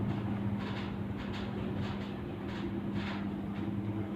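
Steady low electrical hum from a grid-tie wind-turbine inverter working under load, with an even rushing of storm wind behind it.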